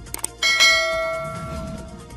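Notification-bell sound effect: two quick mouse clicks, then a bright bell chime about half a second in that rings on and slowly fades.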